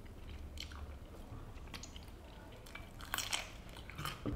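Quiet eating sounds: a knife and fork clicking and scraping on a plate in scattered light clicks, with a louder cluster a little after three seconds in, over a low steady room hum.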